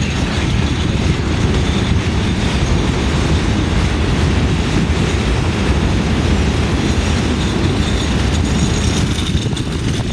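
A freight train's hopper cars rolling past at close range: a steady, loud rumble of steel wheels on the rails.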